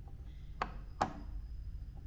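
Two light clicks about half a second apart as an AMD Ryzen 9 5900X processor is set down into the motherboard's AM4 socket, over a faint low rumble.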